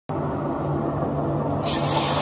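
A steady low hum, then about a second and a half in, water starts pouring from a plastic jug into the glass cylinder of a herbal decoction machine, adding a hiss of falling water.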